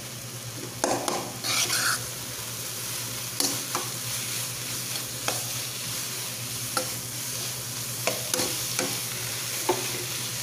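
A spatula stirring and scraping a thick onion masala frying in oil in a nonstick kadai, under a steady sizzle. Irregular sharp knocks of the spatula against the pan come every second or so.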